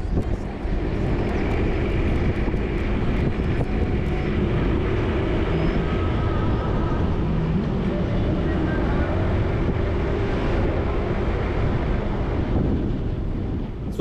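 A car driving steadily on a paved road: continuous tyre and wind noise with a low engine hum underneath.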